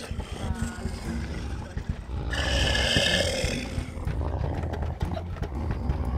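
Dogs growling and snarling behind a door, a continuous low growl that swells louder for about a second around the middle.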